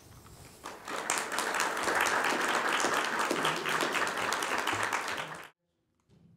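Audience applauding, building up over the first second and then cut off abruptly near the end.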